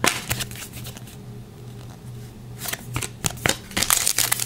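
Trading cards and a foil card pack being handled by hand: a few sharp flicks of card stock, a quieter pause, then a quick run of ticks and rustles in the last second and a half.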